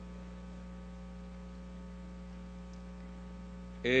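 Steady electrical mains hum: a low, unchanging buzz with several fixed tones, picked up in the microphone feed. A man's voice comes back in right at the end.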